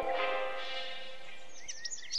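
Guitar music fading out over the first half second, then birds chirping in quick, high twitters from about one and a half seconds in.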